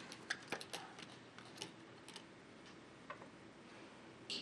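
Quiet room with a few faint, sharp clicks at irregular intervals, most of them in the first half.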